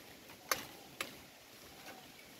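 Woody tea-bush stems snapping during pruning: two sharp cracks about half a second apart, then a faint third near the end.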